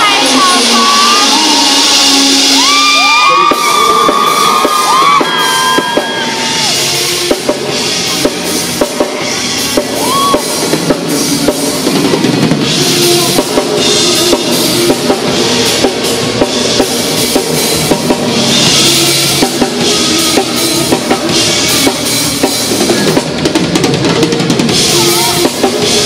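A live rock band playing amplified through a PA: a drum kit keeps a steady beat under electric guitar in an instrumental passage, with gliding guitar lines early on.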